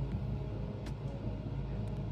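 A steady low hum with a couple of faint clicks.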